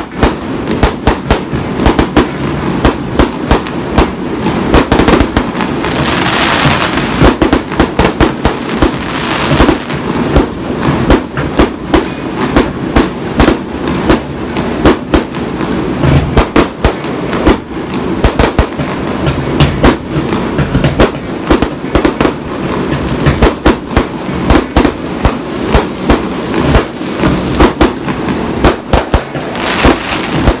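Fireworks display: aerial shells burst overhead in a dense, continuous barrage of bangs and crackles, with a stretch of hissing crackle about six to ten seconds in.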